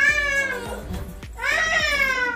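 Cat meowing: long drawn-out meows that rise and fall, one starting right away and another about a second and a half in, over background music.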